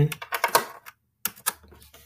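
A cluster of quick light clicks from someone working a Chromebook, through the first second, then a few more about a second and a quarter in.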